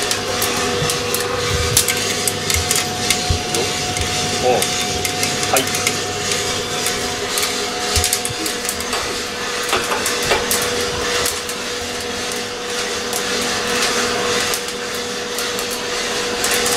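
Diedrich drum coffee roaster running near the end of a roast on low gas: a steady hum from its motor and fan with beans tumbling in the drum. A second hum tone drops out about halfway through. Throughout, a scatter of sharp pops and clicks from the beans cracking.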